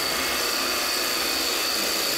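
Wood lathe running while a gouge cuts into a spinning wooden blank: a steady, even hiss of cutting with a thin high whine over it.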